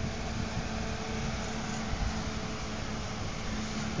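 A steady mechanical hum over a constant rushing noise.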